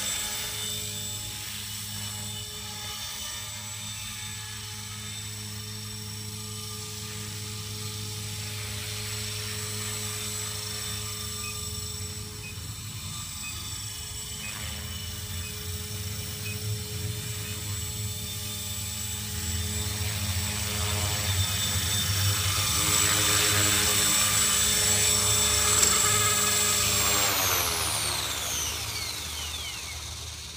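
Align T-REX 450 Pro electric RC helicopter flying, its motor and rotor giving a steady whine that grows louder as it comes closer. About three seconds before the end the pitch falls steadily as the motor is throttled down and the rotor spins down after landing.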